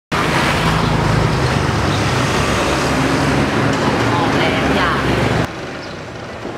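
Street traffic noise with a motor vehicle engine running close by and voices mixed in. It cuts off abruptly about five and a half seconds in, leaving quieter street ambience.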